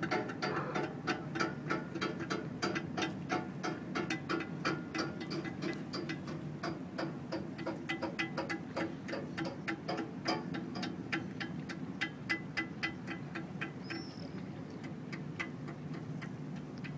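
Rapid, slightly uneven clicking, about four clicks a second, over a steady low hum, easing off a little towards the end.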